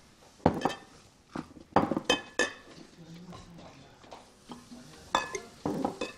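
Wooden spoon stirring a thick paste of clay, bran, salt and mineral water in a bowl, with irregular scrapes, knocks and clinks against the bowl's sides. The knocks are grouped in the first couple of seconds and again near the end.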